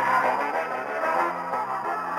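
Music interlude in a shortwave radio broadcast, received off the air, with steady held notes.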